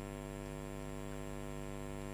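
Steady electrical mains hum: a low drone with many higher tones stacked over it, at an unchanging level.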